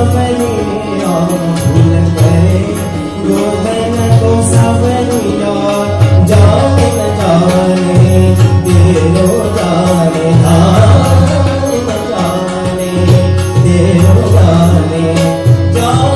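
Live Indian devotional bhajan: voices singing a melody accompanied by tabla and harmonium.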